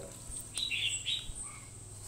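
A few short bird chirps, about half a second to a second in, faint over a steady high background tone.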